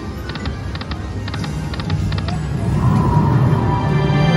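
Aristocrat Timberwolf video slot machine during a free game: five short clicking reel-stop sounds, one after another about half a second apart, over the machine's background music. A win sound with sustained tones follows, growing louder near the end.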